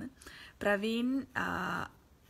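A woman's voice making two drawn-out wordless vocal sounds about halfway through, the first bending in pitch, in a small room.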